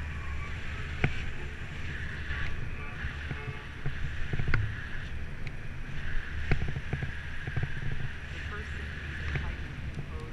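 Steady wind rush on the microphone and tyre noise from a moving bicycle, with several sharp clicks and rattles from the bike as it rides over the road surface.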